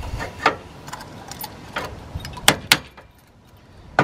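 Metal clicks and clinks of a Master Lock trailer coupler lock being fitted onto a trailer's ball coupler, with keys jangling. There are two sharp clicks about two and a half seconds in.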